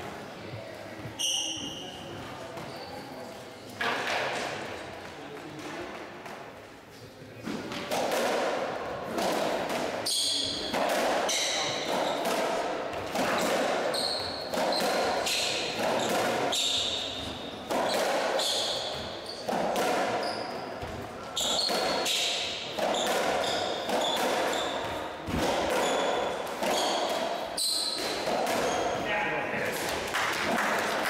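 A racketball rally on a squash court: the rubber ball is struck by the rackets and rebounds off the walls and wooden floor, with sharp echoing knocks. The knocks are sparse at first, then come steadily, about one every second and a half, from about eight seconds in. Shoe squeaks on the court floor fall between the hits.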